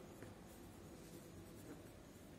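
Faint scratching of a pencil writing on a textbook page.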